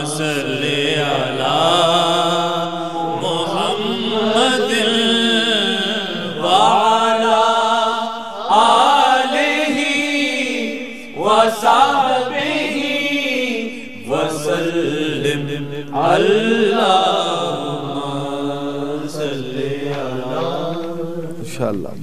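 A man singing a naat solo in long, drawn-out, ornamented phrases that bend up and down, the wordless opening before the verse, over a steady low drone.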